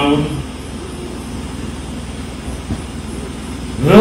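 A man making a speech into a microphone stops about half a second in. For about three seconds there is only a steady low rumble of background noise, then he starts speaking again near the end.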